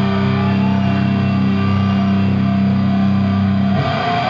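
Amplified, distorted electric guitar holding a sustained chord that rings on steadily, then moving to new notes just before the end.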